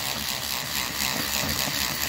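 Battery-powered rotary cleaning brush with a tapered head spinning against a fabric soft-top: a steady motor whir with the stiff bristles scrubbing the cloth.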